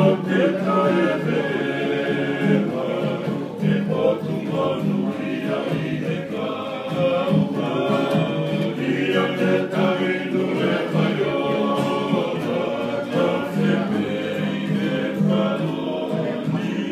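A group of men singing together in harmony, accompanied by strummed acoustic guitars.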